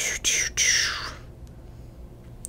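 A person whispering briefly, a breathy voice that slides downward and lasts about a second, then only faint room hum.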